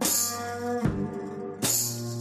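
One-man-band blues groove: electric guitar chords in open tuning over a foot-played bass drum and a pedal-worked tambourine in a steady boom-tchak beat. The tambourine jingles at the start and again about a second and a half in, with a bass drum thump between them.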